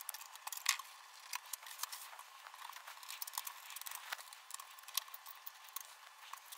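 Faint, scattered clicks and light rustling from hands handling computer wiring and a circuit board, with a few slightly louder clicks.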